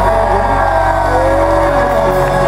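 Live country band playing loud through the PA, with electric guitars and drums, heard from the crowd. A long held note comes in about a second in.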